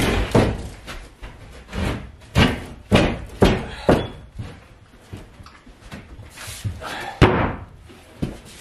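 An OSB panel knocking and thumping against wooden knee-wall studs and the plywood floor as it is set into place: a string of separate knocks in the first four seconds and a louder thump near the end.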